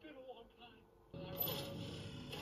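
Soundtrack of a TV fantasy episode: a woman's faint line of dialogue, then about a second in a sudden, loud, noisy burst of sound effects from a green magic blast, with a grunt.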